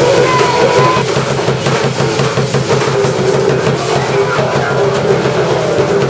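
Live drum kit playing busily, with bass drum and snare, under alto saxophone lines; a high held saxophone note sounds in the first second.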